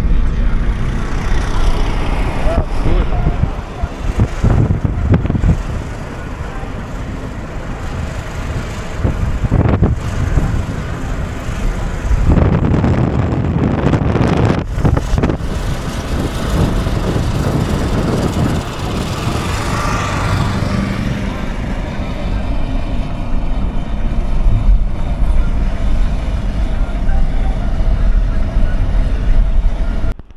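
Road noise inside a moving car: a steady rumble of engine and tyres.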